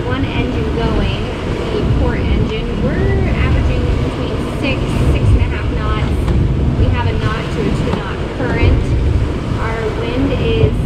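Wind buffeting the microphone and water rushing along the hull of a sailing catamaran under way, a steady, heavy low rumble under intermittent voices.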